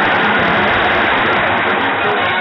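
Large stadium crowd cheering a goal, loud and steady.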